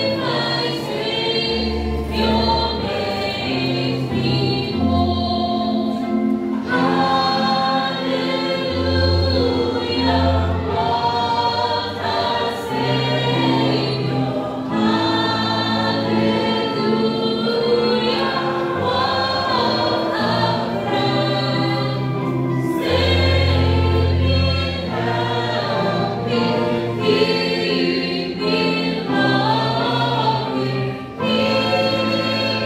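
A church congregation singing a hymn together, with a woman's voice leading on a microphone.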